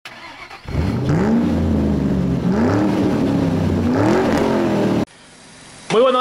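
Car engine revving, its pitch climbing in three rising sweeps, then cut off suddenly about five seconds in.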